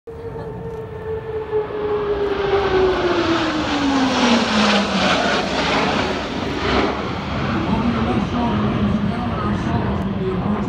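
Blue Angels jet formation flying past, the engine noise swelling and the pitch of its tone falling steadily over the first five seconds as the jets pass, then holding steady.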